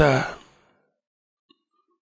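A man's voice close on a microphone: a drawn-out, sigh-like vocal sound that fades out about half a second in, followed by near silence with one faint click.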